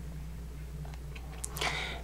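Quiet indoor room tone with a steady low electrical hum, and a soft breath drawn in near the end.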